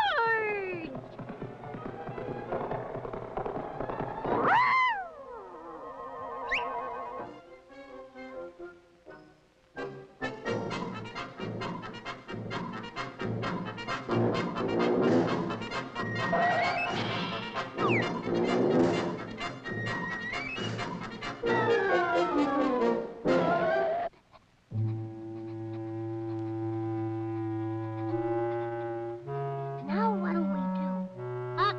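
Brass-led cartoon film score: sliding, falling notes in the first few seconds, then a fast busy passage with many sharp knocks and clicks through the middle, and slow held chords in the last few seconds.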